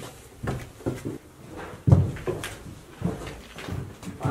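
Footsteps going down wooden basement stairs: a string of uneven thumps and knocks, the loudest about two seconds in.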